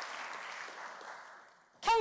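Audience applause dying away, fading out over about a second and a half.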